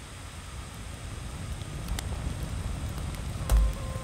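Low steady rumble of fire ambience from the music video's outro, with a few faint crackles and a dull thump about three and a half seconds in.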